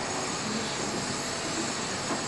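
Steady rushing background noise with no speech.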